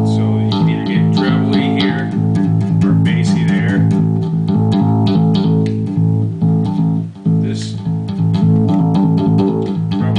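Music Man StingRay electric bass with active electronics, played through an Ampeg SVT amp and 8x10 cabinet: a continuous run of plucked bass notes, with a short break about seven seconds in.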